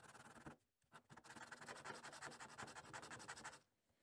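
A small spacer rubbed back and forth on sandpaper to thin it: faint, rapid scratching strokes, with a short scrape at the start and then a steady run from about a second in until shortly before the end.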